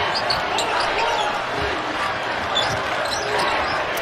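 Basketball arena game sound: a steady crowd din with a basketball being dribbled on the hardwood court.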